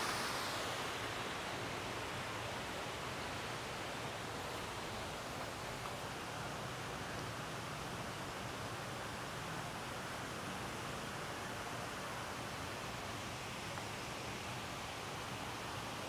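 Steady, even rushing background noise outdoors, with no distinct events.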